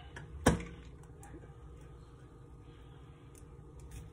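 A single sharp tap against a drinking glass about half a second in, as a strawberry wedge is pressed onto its rim, followed by a few faint light clicks.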